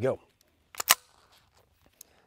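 One suppressed shot from a Ruger PC Charger 9mm pistol firing suppressor ammunition, a single sharp crack about a second in.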